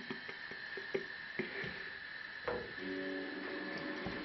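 Light, irregular clicks and knocks of a frying pan and utensils being handled on a gas stove. About halfway through a steady low hum sets in.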